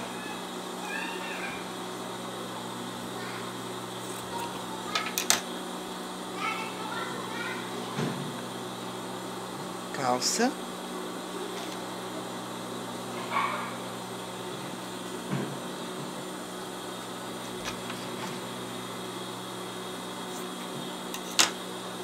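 Steady hum of an industrial overlock sewing machine's motor running idle, not stitching. A few short sharp clicks and brief faint pitched calls come and go over the hum.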